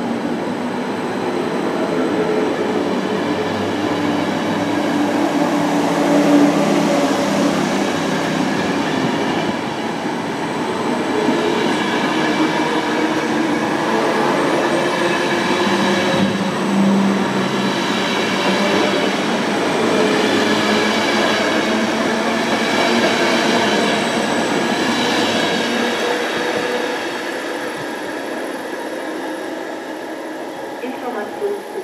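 ÖBB passenger coaches rolling past along a station platform, a steady loud rolling noise of wheels on rail that eases off over the last few seconds as the last coach clears.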